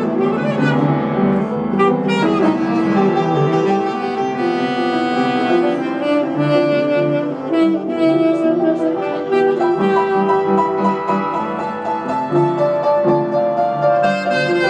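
Saxophone playing a melody over upright piano accompaniment, a live duet.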